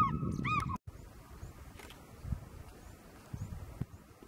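A bird gives a few loud, clear yelping calls, arched in pitch, over a low rumble; they are cut off abruptly less than a second in. After that only a quiet outdoor background remains, with faint high chirps and a few soft low thumps.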